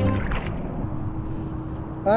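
Background music ending in the first moments, then a steady rush of wind and water noise on the microphone out on the open lake, with a faint steady hum underneath.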